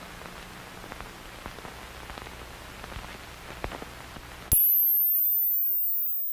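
Electronic sound effect: a crackling, hissing static bed with a low hum and scattered clicks. About four and a half seconds in, a loud, very high-pitched steady tone cuts in abruptly, with a faint falling whistle beneath it.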